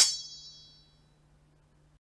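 A high metallic ringing ding fades out over about a second, closing the morph sequence's music and crash effects. Near silence with a faint low hum follows.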